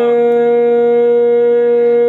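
Conch shell (shankh) blown in one long, steady note.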